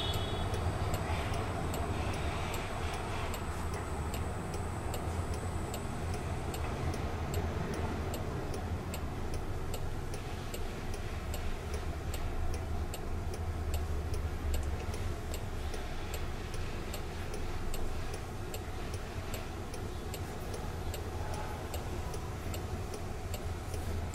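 Steady, evenly spaced ticking, about two ticks a second, over a low steady hum inside a stationary car's cabin.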